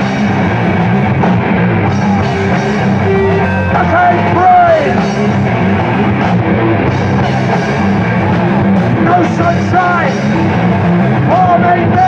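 Live heavy metal band playing loud and steady: distorted electric guitars, bass guitar and drum kit, with a few sliding notes standing out about four and ten seconds in.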